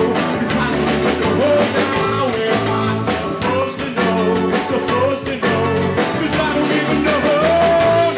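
A live band playing a folk-rock song: electric and acoustic guitars over a steady beat, with a held note near the end.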